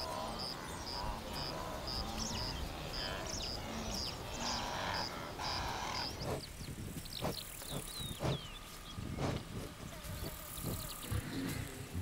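A herd of wildebeest grunting and calling at close range. A regular high chirp repeats about twice a second through the first half, and after about halfway there are scattered short knocks from the moving herd.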